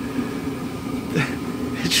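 A steady low hum, with a short breathy chuckle about a second in.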